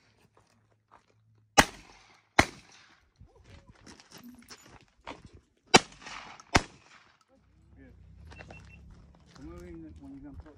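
Two pairs of shotgun shots at hand-thrown clay targets, the shots in each pair under a second apart. The first pair comes about a second and a half in, the second about four seconds later.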